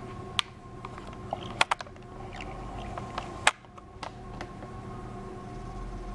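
Handling noise: a few scattered light clicks and taps, the sharpest a second and a half in and again about three and a half seconds in, over a faint steady hum.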